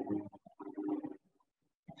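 Faint, low murmured voice sounds for about a second, then dead silence.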